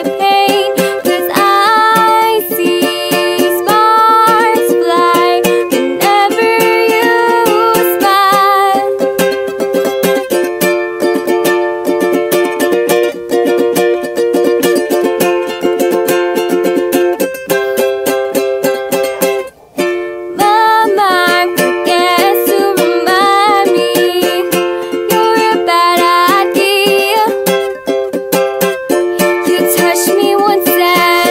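Background music: a song with a singing voice over a steady strummed accompaniment, with a brief break about two-thirds of the way through.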